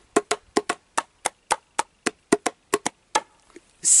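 The gas-domed lid of a jar of fermenting olives being drummed by hand. It gives about fifteen quick, hollow taps in a loose rhythm that stop a little after three seconds. The lid is pulled taut by the gas the olives give off.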